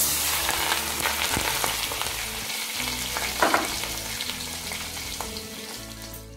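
Hot tempering oil with fried cashews poured onto ground mint-coriander paste in a steel bowl, sizzling and crackling. It starts suddenly as the oil hits the paste and slowly dies down.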